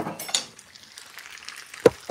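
Food sizzling faintly in a hot pan, with a sharp click near the end.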